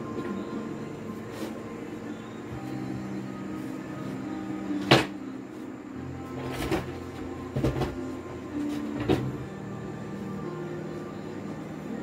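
Several sharp knocks and bangs at irregular intervals, the loudest about five seconds in, over steady background music.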